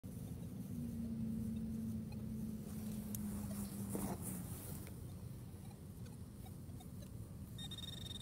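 Faint scraping and rustling of a hand digging tool working into leaf litter and soil, over a low steady hum in the first half. A high steady electronic tone sets in near the end.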